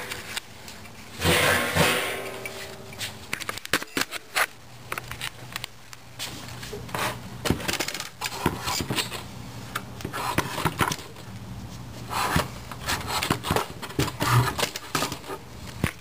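Handling noise: irregular clicks, knocks and scrapes of objects and the camera being moved about on a wooden table, loudest about a second in.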